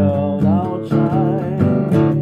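Steel-string acoustic guitar strummed in a steady rhythm, with a man's voice holding a wavering sung note over it for the first part.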